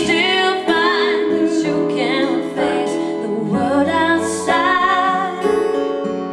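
Live pop ballad: a woman singing long, wavering held notes over keyboard and acoustic guitar.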